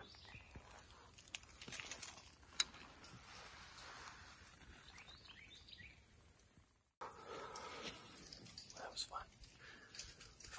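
Faint woodland ambience with a few faint bird chirps and a single sharp click between two and three seconds in; the background changes abruptly about seven seconds in.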